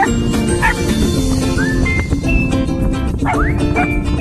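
Background music, with a small dog yipping a few times over it.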